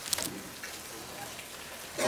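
Steady, even background hiss with a few faint clicks in the first moment.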